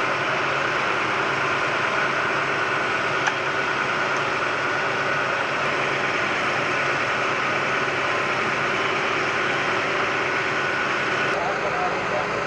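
Fire-hose water jets spraying and a fire engine's pump engine running, heard as one steady, dense rushing noise with a low hum under it.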